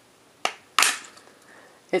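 Plastic battery cover of an HTC Rezound phone being pried off, its clips letting go with two sharp snaps about a third of a second apart, the second louder.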